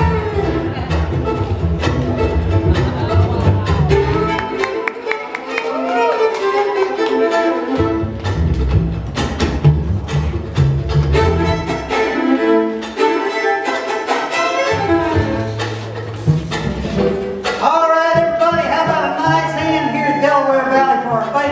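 Live bluegrass instrumental: fiddle playing the lead over banjo and plucked upright bass. The bass drops out twice, once about five seconds in and again in the second half, for two to three seconds each time.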